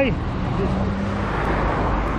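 Road traffic noise on a city street: a car passing, a steady rush of tyre and engine noise that swells about a second and a half in, with a faint engine hum under it.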